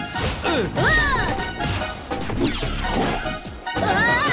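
Cartoon slapstick sound effects over background music: several crashes and knocks, with pitched tones that swoop up and down.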